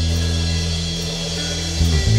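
Live reggae band playing: a held low chord from bass and keys that fades slightly, then a drum hit and a new phrase starting near the end.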